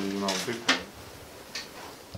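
A brief voice, then a single sharp clack about two-thirds of a second in and a fainter tap near the end, like a hard object being set down or knocked.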